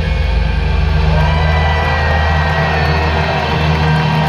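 Final chord of a live metal song ringing out through an arena PA: a loud, steady low bass drone held under fainter wavering high tones.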